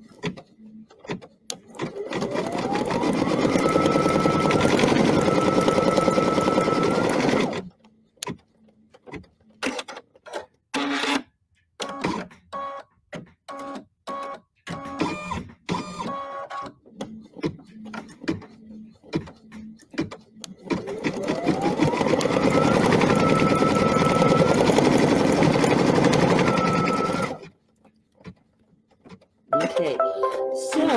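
Computerized embroidery machine stitching out an appliqué placement line. Its motor whine rises to a steady pitch as it runs up to speed for about five seconds, then it runs in short stop-start bursts with clicks, then runs up to speed again for another long stretch near the end.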